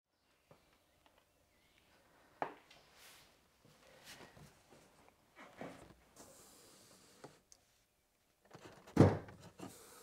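A single sharp thunk about two and a half seconds in, followed by a few faint knocks and rustles of handling inside a car; a man starts speaking near the end.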